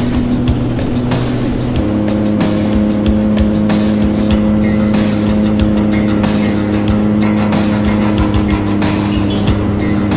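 Yamaha WaveRunner personal watercraft running at speed, with wind buffeting and water spray on the microphone. Music with sustained notes plays along, changing to a new chord about two seconds in.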